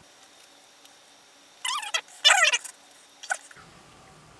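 Two short bursts of high-pitched, squeaky, chipmunk-like voices around the middle, with a brief third a little later, over faint room tone. The raised pitch and missing low end fit speech in sped-up footage.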